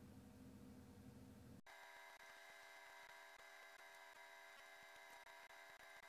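Near silence: a faint steady hum and hiss from the recording's noise floor, which changes abruptly about a second and a half in.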